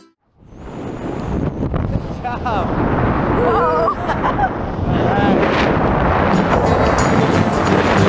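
Freefall wind rushing loudly and steadily over the camera microphone during a tandem skydive, starting after a brief silent gap at the beginning. Over it a woman yells and whoops several times, about two to five seconds in.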